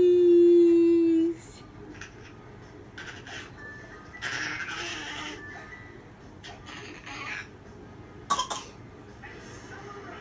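A one-year-old baby vocalizing happily: one long, loud, steady 'aah' at the start that falls slightly and stops after about a second and a half, followed by a few short, breathy squeals and laughs.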